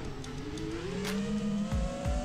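Brushless motors of a 5-inch FPV quad spinning Gemfan Hurricane 51433 three-blade props, a steady whine that rises in pitch as the throttle is pushed up, then holds.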